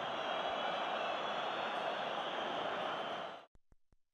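Steady noise of a football stadium crowd, cutting off abruptly about three and a half seconds in, followed by a short run of faint clicks that fade away.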